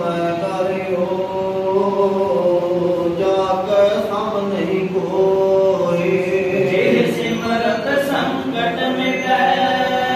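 Men's voices chanting a Sikh hymn (Gurbani) together into microphones, in long held, slowly moving notes.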